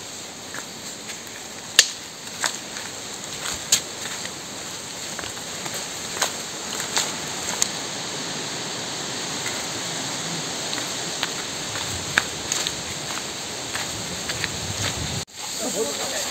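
Footsteps crunching on dry leaf litter and twigs, irregular crackles and snaps over a steady hiss, with one sharp snap about two seconds in.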